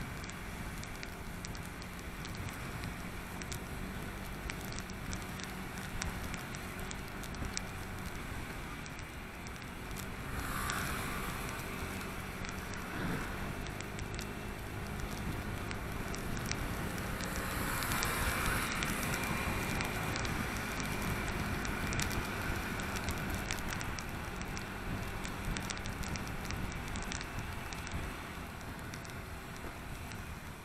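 Motorbike riding on a wet road, heard through an action camera: a low steady engine hum under crackling wind and spray noise, growing louder about ten seconds in and again around eighteen seconds in.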